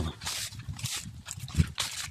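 Footsteps crunching through fallen dry leaves and grass at a brisk walk, several steps, with a brief low vocal sound about one and a half seconds in.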